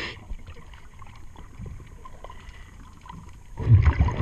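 Diver's breathing regulator underwater: a quieter stretch with small ticks and gurgles, then a loud burst of exhaled bubbles rumbling past the camera near the end.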